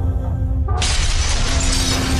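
Background music of sustained held notes over a deep pulsing bass. About three-quarters of a second in, a sudden glass-shattering sound effect comes in over it, its bright crackle carrying on through the rest.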